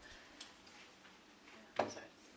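Quiet room with a faint click and then, near the end, a single short knock, like something being handled or set down at a lectern.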